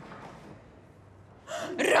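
Quiet room tone, then about one and a half seconds in a sudden loud gasp of surprise that runs straight into a voice.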